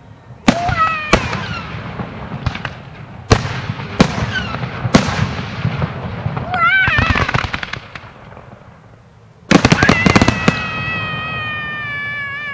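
Fireworks display: shells bursting in single sharp bangs every second or so, then a rapid volley of bangs about three-quarters of the way through.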